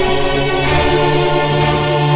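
Background music score: held choir-like voices over a steady bass drone, with a soft beat about once a second.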